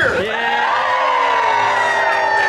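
Fishmonger's long, drawn-out shout at the fish stall, one held call that sets off right at the start and sags slightly in pitch as it goes on. It is the fish-throwing call given as a fish is about to be tossed.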